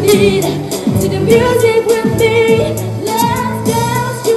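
A girl singing into a microphone over a pop backing track with a steady beat.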